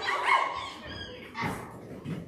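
Several children's voices making short, high, yelping monkey-like calls that die away about halfway through, followed by a dull thump.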